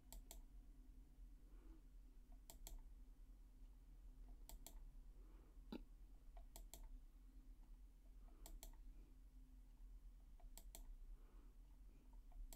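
Faint computer clicks in quick pairs, about every two seconds, as an on-screen document is scrolled, with one sharper tick about halfway through, over a low steady hum.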